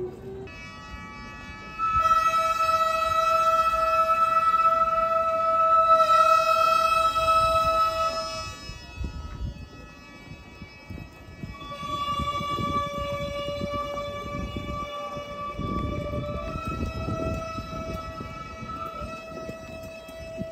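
Music of long, held wind-instrument notes, each sustained for several seconds, with a slight pitch bend about six seconds in. After a short break around ten seconds the notes come back, stepping to a lower and then a higher pitch, over low street noise.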